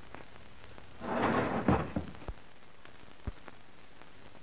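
A door being shut: about a second of rustling noise that ends in a sharp thump, followed by a few light knocks, over the steady hiss of an old film soundtrack.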